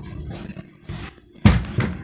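A dull thunk about one and a half seconds in, followed by a lighter knock, as dried oregano is tipped from a plastic cup into a glass mixing bowl.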